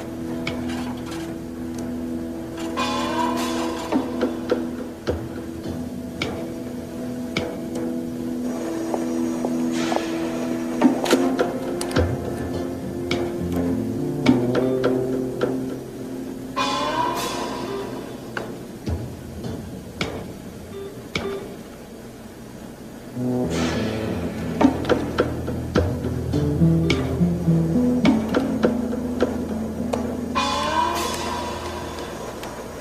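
Tense film-score music of held tones with rising swells, laced with short sharp clicks and knocks.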